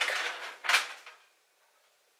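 A short scrape, then a single sharp knock of cookware on the stove top under a second in, fading out quickly.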